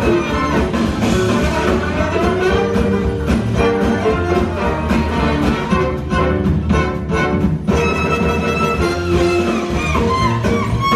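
Live hot-jazz band playing, a fiddle prominent over drums and upright bass; the low end thins out for a moment near the middle while the drums keep hitting.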